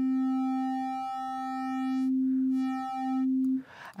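A SkyDust 3D software synthesizer plays a sine-wave oscillator through its wave-folding modifier as one steady held note with a bright set of added overtones. About halfway through, the overtones fade out to nearly a pure sine and then come back as the modifier amount is moved. The note stops shortly before the end.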